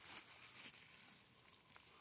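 Very faint rustling and scraping of fingers digging into forest soil and leaf litter, with two slight scuffs in the first second.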